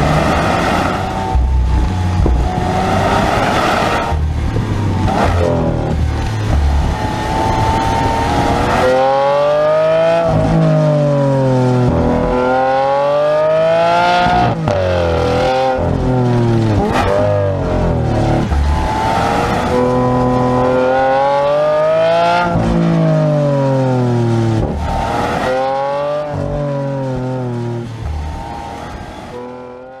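Lamborghini Aventador's V12 engine under hard acceleration, heard from the driver's seat. After a rougher stretch of engine and road noise, it revs repeatedly, the pitch climbing and dropping over and over. The sound fades out near the end.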